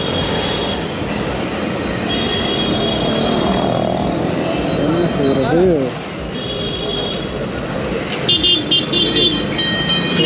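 Busy street traffic heard from a slowly moving motorcycle: vehicle horns toot several times, with a quick run of short beeps near the end, over steady engine and road noise.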